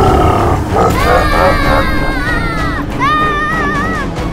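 Background music with two long, held cries, the first about a second in and the second near the end.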